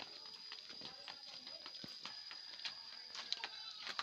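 Faint, irregular footsteps and small knocks of sandals on a dirt path, over a steady high-pitched tone, with a faint short animal call late on.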